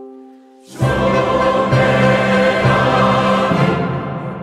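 A held brass chord fades away, then choir and chamber orchestra come in loudly together just under a second in. They hold a full chorus of sacred music until shortly before the end, when the sound cuts off and rings on in the hall's reverberation.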